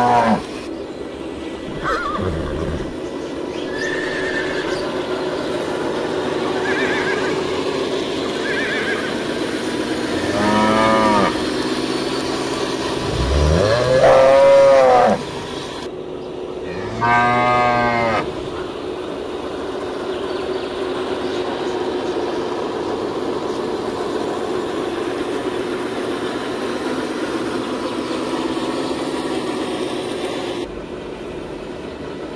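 Cattle mooing: three long moos, the middle one the loudest and longest, over a steady background drone.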